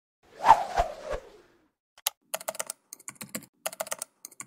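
A brief swelling noise about half a second in, then rapid computer-keyboard typing: quick, irregular key clicks from about two seconds in.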